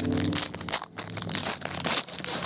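Foil wrapper of a trading card pack being torn open by hand: a run of crinkling rips and crackles, several short tears about half a second apart.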